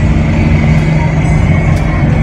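Loud, steady engine and road noise inside the cabin of a moving van, a constant low drone.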